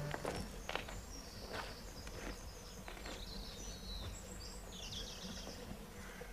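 Footsteps on a gravel drive, a step about every two-thirds of a second for the first few seconds, with birds chirping throughout.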